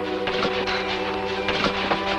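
Soft background score of sustained, held chords, with a few light knocks and rustles from cardboard boxes being carried.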